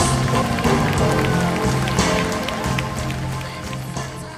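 Live blues band playing, with electric slide guitar notes gliding over bass and drums; the music fades out toward the end.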